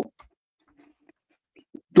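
A pause between words of a man's speech: near silence with a few faint, brief low sounds, framed by the end of one word and the start of the next.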